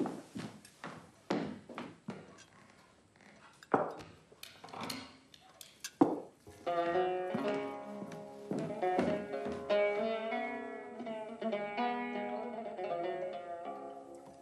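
A gramophone record begins playing about halfway through: a plucked-string folk tune, on a record said to be faulty and about to skip. Before the music comes a scattered series of sharp clicks and knocks.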